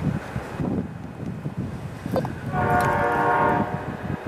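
A locomotive air horn, most likely on the Amtrak California Zephyr's GE P42DC, sounds one chord blast of about a second, starting about two and a half seconds in. Before it there is low rumble and wind noise.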